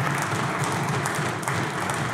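Applause from a group of legislators clapping their hands, a dense, steady patter of claps.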